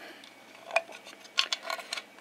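Hard plastic snap-fit case being pried apart by hand: a scattering of small sharp clicks and ticks in the second half as the tight clips strain and give.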